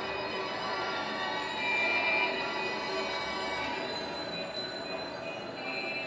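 The sound-effects track of a museum diorama playing: a dense, steady wash of noise with several sustained high tones over it.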